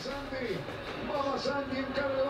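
Football match broadcast from the television: a commentator talking over a background of stadium crowd noise, quieter than the talk in the room.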